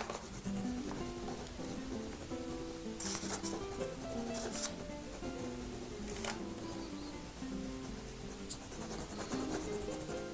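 Soft background music with slow-moving notes, over the dry scratch and tap of a dark soft pastel being dabbed onto paper, with a few sharper scratching strokes through the middle.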